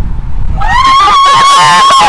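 A girl's long, loud victory scream, one held note, starting about half a second in, with other voices shouting and cheering over it as a goal is celebrated.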